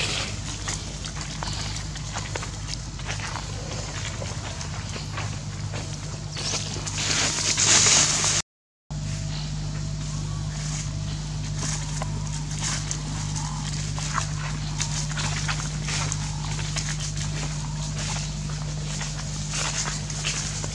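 Footsteps and crackling in dry leaf litter over a steady low hum, with a louder rush of rustling around seven to eight seconds in. The sound cuts out completely for a moment just after that.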